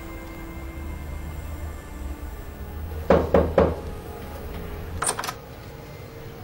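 Three knocks on a wooden door about three seconds in, then a single click of the door latch near the end, over a low steady hum.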